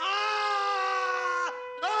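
A man screaming in horror: one long scream, sagging slightly in pitch and breaking off about one and a half seconds in, then a second scream starting just before the end.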